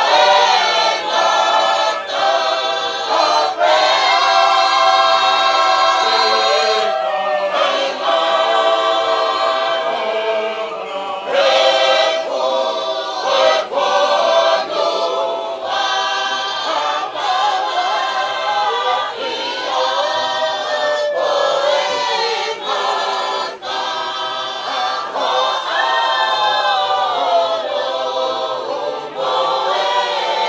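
A large choir of men and women singing a hymn without accompaniment, in sustained harmony.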